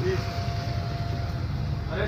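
Steady low rumble of background noise with a thin steady hum that stops about a second and a half in, and a faint voice briefly at the start.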